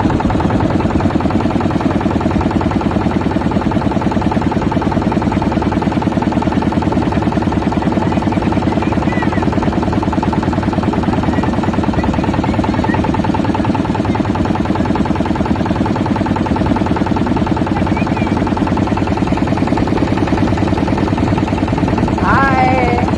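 Motorboat engine running steadily with a fast, even chugging beat.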